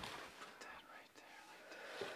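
Faint, breathy breathing of a young woman fighting back tears, with a few small clicks.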